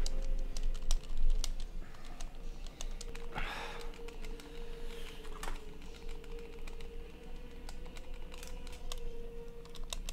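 Plastic buttons of a handheld video-game controller clicking in quick, irregular presses over a steady low tone.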